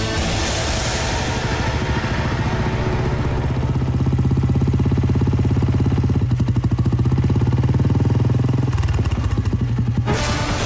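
Motorcycle engine running as the bike is ridden, a steady fast low pulsing that grows louder about four seconds in, with fading background music at the start.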